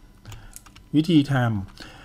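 Several light clicks at a computer keyboard in quick succession, much quieter than the voice, followed by a short spoken phrase in Thai and one more click near the end.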